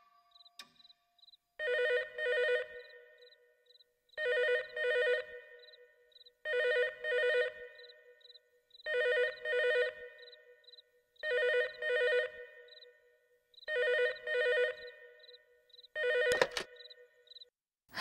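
Corded landline telephone ringing in a double-ring cadence (ring-ring, pause), six full rings about every two and a half seconds. The seventh ring is cut short and followed by a clunk as the handset is lifted.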